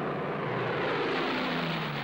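Piston engines of a formation of propeller fighter planes droning steadily, their pitch sinking slightly as they pass.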